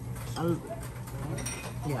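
A short closed-mouth 'mm' of approval from a person tasting food, rising and falling in pitch about half a second in, over low background chatter.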